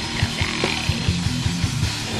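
Thrash/death metal band playing: distorted electric guitars and bass over fast, evenly repeating kick-drum beats.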